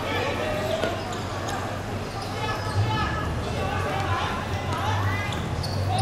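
Players' voices calling out on an outdoor football court, with a few sharp thuds of the ball striking the hard pitch, over a steady low hum.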